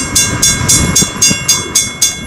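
Steam locomotive working hard, its exhaust chuffing in an even beat of about four a second. A faint steady high tone runs underneath.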